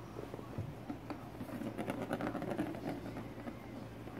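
Small plastic ball rolling and rattling around the circular plastic track of a cat scratcher toy. It builds to its loudest about two seconds in and fades before the end.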